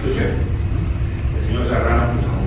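Speech: a man talking into a handheld microphone, with a steady low hum underneath.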